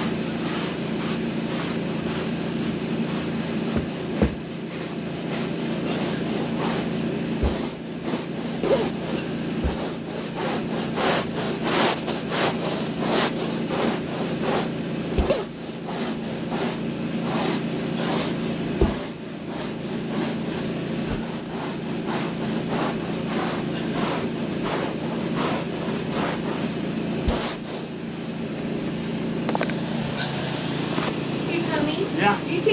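A stiff-bristled scrub brush on a pole rubbing back and forth over carpet in repeated strokes, agitating pre-spray into the pile, with a few sharp knocks. Under it, a carpet-cleaning machine hums steadily.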